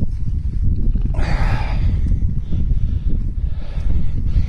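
Wind rumbling on the microphone, and about a second in a short breathy sound from a ram as it presses and rubs its head against a wooden shepherd's crook.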